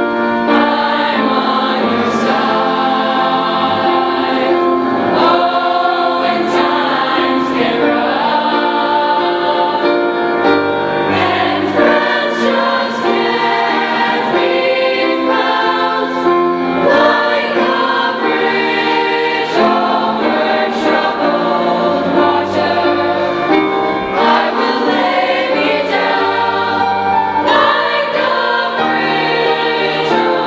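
Youth choir of mostly girls' voices singing a song together, with held, changing chords all the way through.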